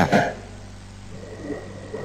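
A pause in the talk: a man's voice trails off at the start, then only a low steady hum and faint hiss of the voice-chat stream remain, with a faint thin high tone near the end.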